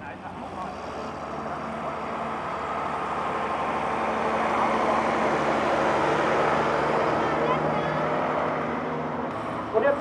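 Large Schlüter tractor's diesel engine working under load as it pulls tillage gear across a field. The engine sound grows louder toward the middle and fades again.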